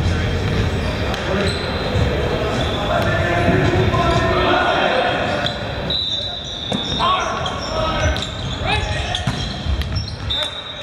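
Volleyball rally in a large, echoing gym: voices of players and spectators, sharp thuds of the ball being struck and bouncing, and short squeaks of court shoes on the hardwood floor in the second half.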